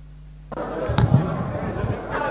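A low steady hum, then about half a second in the chamber sound cuts in abruptly: indistinct voices in the parliamentary chamber, with a sharp knock about a second in.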